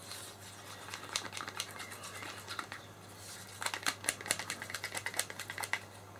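Wooden stirring stick clicking and scraping against the inside of a small plastic cup while mixing a drop of blue pigment into silicone paint, with a quicker run of clicks in the second half.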